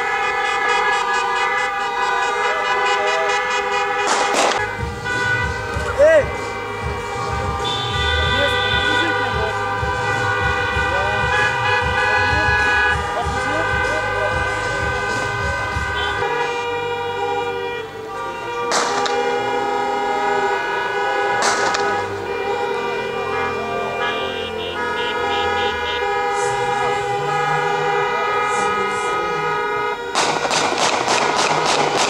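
Several car horns honking at once in long, overlapping blasts from a passing convoy of cars, the mix of pitches shifting every few seconds, with a few sharp knocks.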